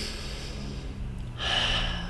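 A woman demonstrating slow deep breathing. One breath fades out at the start, and another long breath is heard from about one and a half seconds in.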